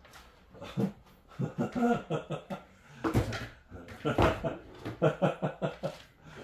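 Speech with laughter: a voice talking and chuckling, with two louder bursts about three and four seconds in.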